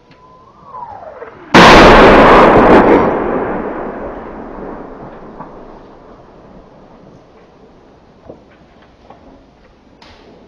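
An incoming shell whistles, falling in pitch, then explodes about a second and a half in. The blast is sudden and very loud and rumbles away over several seconds.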